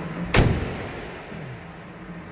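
The tailgate of a 2018 Ram 2500 pickup slammed shut once, about half a second in: a single solid thud that dies away quickly, the sign of a tailgate that latches solidly.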